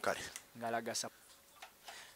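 A faint, soft voice speaking briefly in the first second, then a pause that is close to silent.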